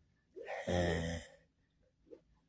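A man sighs once: a breathy exhale that runs into a low voiced tone, about a second long.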